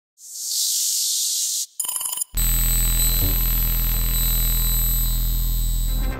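Electronic intro sound design. A hissing noise swell lasts about a second and a half. It is followed by a brief stuttering glitch. Then a steady deep synthesizer drone with thin high tones sets in and holds.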